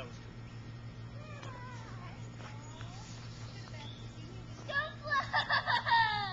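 A child's high-pitched voice calls out loudly in a wavering, sing-song way near the end, after fainter voices earlier, over a low steady hum.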